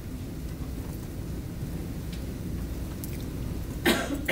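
Steady low rumble of room noise with a few faint clicks, and a short loud sound just before the end.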